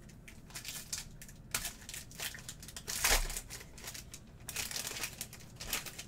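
Foil wrapper of a trading card pack crinkling and tearing as it is opened, in irregular rustling bursts, the loudest about three seconds in.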